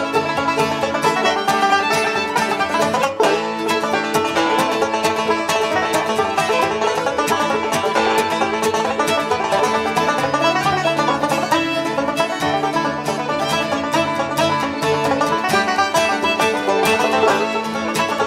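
Acoustic string band playing a tune together: two banjos, an acoustic guitar and a fiddle, in a steady, rhythmically tight Irish-bluegrass style.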